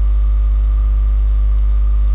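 Steady electrical mains hum: a loud, unchanging low drone with a faint buzz of higher overtones, picked up on the recording.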